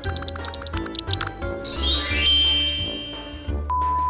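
Light background music with plucked, repeated notes, then a rising glide sound effect about midway. Near the end a steady, even beep begins: the test tone that goes with TV colour bars.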